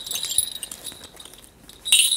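A Korean shaman's brass bell cluster (mugu bangul) jingling as it is shaken in the hand. The ringing fades away about halfway through, then comes back louder with a fresh shake near the end.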